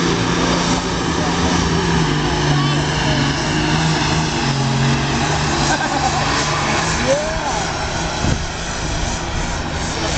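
Twin-turbocharged diesel engine of a 410-cubic-inch limited pro stock pulling tractor running flat out under load as it drags the weight sled down the track, its pitch stepping a couple of times during the pull.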